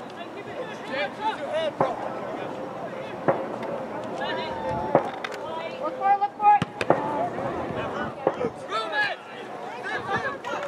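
Several voices shouting and calling to one another during soccer play, with a few sharp knocks scattered among them.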